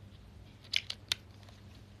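Three short, sharp clicks a little under a second in, from fingernails tapping and handling a smartphone.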